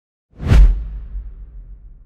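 Title-card whoosh sound effect with a deep boom, hitting about half a second in and leaving a low rumble that fades away over the next second and a half.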